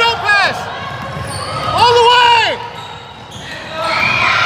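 A basketball being dribbled on a hardwood gym floor, with sneakers squeaking in a few quick chirps near the start and one longer squeal about halfway through.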